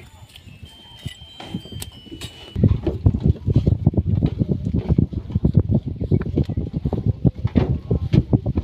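Quiet at first, then about a third of the way in a loud, irregular low rumbling and buffeting sets in, typical of wind blowing on the phone's microphone.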